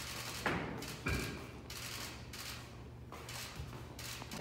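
Two dull thuds a little over half a second apart, the second followed by a short high squeak, over a low steady hum of room noise.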